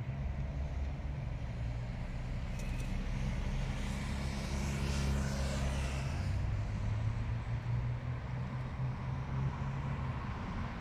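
Road traffic: a steady low engine rumble, with a vehicle passing close by about halfway through, swelling and fading.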